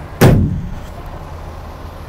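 The trailer's aluminum pass-through door being pushed shut: one sharp bang just after the start that dies away within half a second, over a steady low hum.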